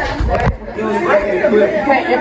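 Teenagers' voices chattering and talking over one another in a classroom, with a brief bump of handling noise in the first half second.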